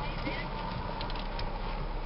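Steady low rumble and hiss inside a car's cabin, with a few faint clicks about a second in.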